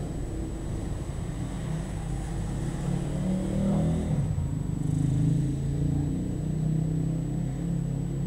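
A motor vehicle's engine running close by, a low steady hum whose pitch rises and dips about three to four seconds in before settling again.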